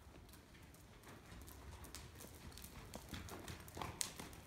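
Faint hoofbeats of a horse moving on the soft dirt footing of an indoor arena, an irregular patter of soft strikes, with one sharper knock just before the end.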